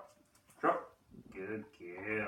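A puppy vocalising: a short bark about half a second in, then a longer wavering whine.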